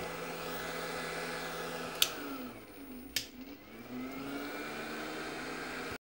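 A running 1000 W power inverter with a steady electric whir from its cooling fan. About two seconds in there is a sharp click and the whir sinks in pitch; a second click follows about a second later, and the whir climbs back to its steady pitch.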